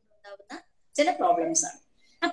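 A woman speaking: a short vocal sound just after the start, a brief pause, then a phrase of speech through the second half.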